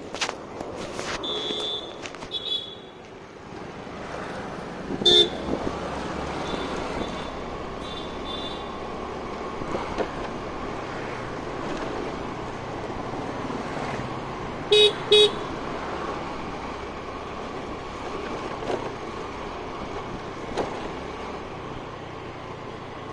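Motor scooter being ridden along a road, its engine and the road noise running steadily, with short horn beeps: one loud beep about five seconds in and two quick beeps about fifteen seconds in.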